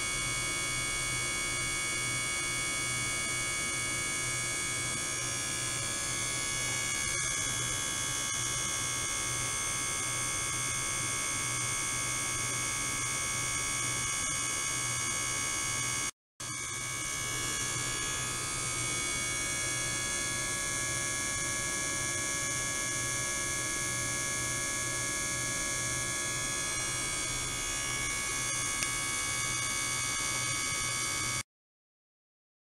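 Ultrasonic transducers running in a water tank, giving a steady electrical buzz and hum with many high steady whining tones, cut off briefly about halfway through.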